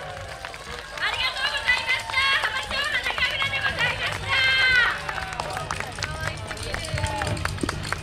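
Young children's high voices shouting and calling out together in bursts, ending in one long held shout about halfway through. Sharp clacks of wooden naruko clappers sound throughout.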